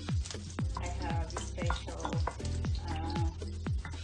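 Background music with a fast, deep drum beat, over ginger strips sizzling as they fry in oil in a frying pan and are stirred with a wooden spatula.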